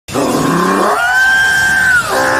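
Cry of an anime monster: a low growling call that rises about halfway into a high-pitched screech, held for about a second.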